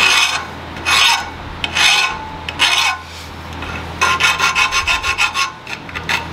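Metal file scraping across the tip of a steel workpiece held in a vise: four long strokes about a second apart, then a quicker run of short strokes near the end.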